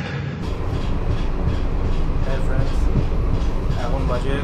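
Passenger train running, heard from inside the coach as a steady low rumble of wheels on the track, with faint voices in the background.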